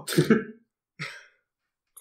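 A man laughing in a short burst of about half a second, then a brief breathy burst about a second in.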